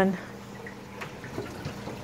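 Water trickling and bubbling in a reef aquarium sump, a soft even wash of water noise with a faint steady low hum underneath.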